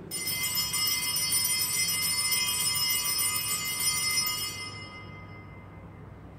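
Altar bell rung at the elevation of the host during the consecration: a bright ringing of several high tones that starts suddenly, holds, and fades out about five seconds in.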